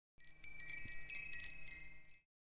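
Bright, high-pitched chimes ringing as a logo sound effect, with several overlapping strikes that die away at the end.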